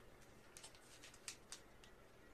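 Near silence: room tone with a handful of faint, short crinkles of a plastic comic book bag being handled.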